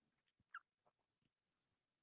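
Near silence: room tone, with one faint, very short sound about half a second in.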